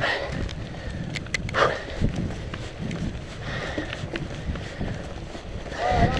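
Mountain bike rolling downhill over a dry-leaf-covered dirt trail: tire noise through the leaves with scattered sharp clicks and knocks as the bike hits bumps.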